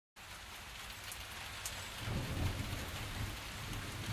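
Steady hissing noise with a low rumble that grows stronger about halfway through.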